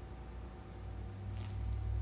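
High-voltage supply for Lichtenberg wood burning humming as it is powered up. The hum grows stronger about a second in, and a brief hiss comes near the end as current starts to burn through the wet wood.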